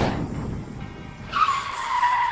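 Car sound effect for a toy car arriving: a low engine rumble, then a sustained tyre screech that starts about a second and a half in and holds one steady pitch.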